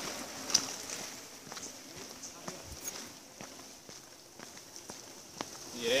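Footsteps crunching on a dirt and gravel trail, a scattered run of sharp clicks over a steady high hiss, growing fainter toward the middle.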